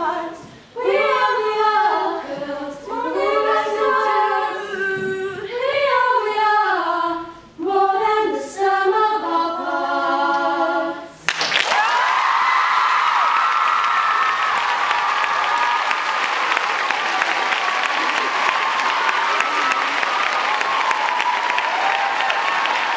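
A small girls' vocal ensemble singing a cappella in close harmony, in phrases broken by short breaths. About halfway through the singing stops and an audience of schoolgirls breaks into loud applause, with cheering voices over the clapping, which keeps up to the end.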